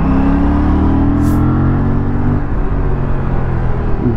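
Aprilia RS 457's 457 cc parallel-twin engine running steadily under way as the bike picks up speed.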